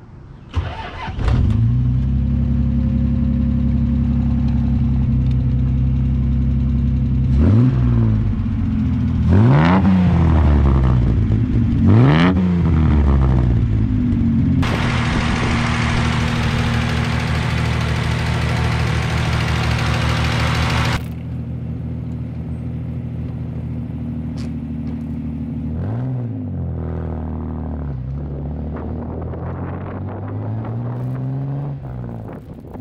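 The 1967 Austin-Healey 3000 Mark III's three-litre straight-six catches after a brief crank about a second in, then idles with several quick revs of the throttle. A loud steady rushing noise covers it for about six seconds in the middle, stopping abruptly.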